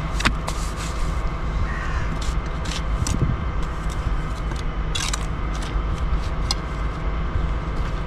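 Bricklayer's steel trowel scraping and knocking as mortar is scooped from a steel wheelbarrow and blocks are set, a handful of sharp clicks and scrapes. Under it runs a steady low mechanical drone.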